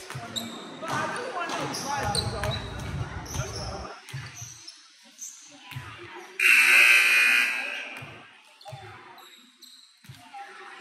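A basketball bouncing on a hardwood gym floor: single slow thumps about a second or more apart, under voices for the first few seconds. About six and a half seconds in comes a sudden loud rushing noise that fades over a second or so.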